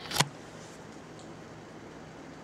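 Camera handling noise: a hand covering the lens brushes against the camera in one brief rub just after the start, then only quiet room tone with a faint steady hum.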